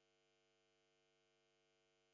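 Near silence: only a very faint, steady electrical hum.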